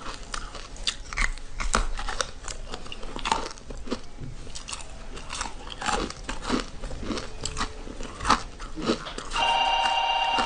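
Chunks of frozen ice bitten and crunched in the mouth, a run of sharp crackling snaps with a few louder cracks. Near the end a steady, pitched ringing tone sets in.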